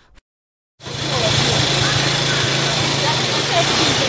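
Engine of a homemade scrap-metal car running steadily, a constant low hum under broad noise, starting about a second in after a brief silence.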